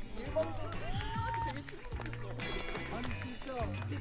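People talking over background music.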